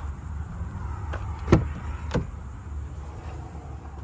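A car door being handled: a few short clicks and knocks, the sharpest about a second and a half in, over a low steady rumble.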